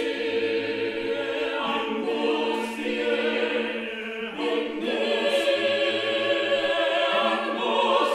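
Small vocal ensemble singing a cappella in sustained chords, with a brief break between phrases about four seconds in and low bass notes joining in twice.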